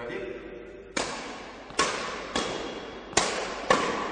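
Badminton rackets hitting a shuttlecock back and forth in a fast flat drive exchange: five sharp hits, the first about a second in, then every half to three-quarters of a second, each echoing in a large sports hall.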